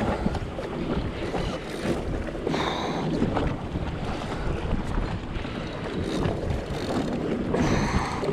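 Wind buffeting the microphone over steady lapping of choppy water against a personal watercraft's hull.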